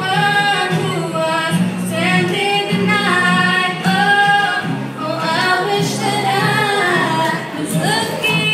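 Girls singing a song into microphones, accompanied by an ensemble of acoustic guitars. The vocal melody holds and bends its notes over steady low guitar chords.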